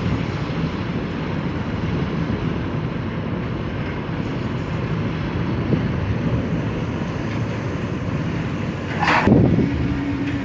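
Steady low rumble of heavy machinery with wind buffeting the microphone, and a sudden louder burst about nine seconds in.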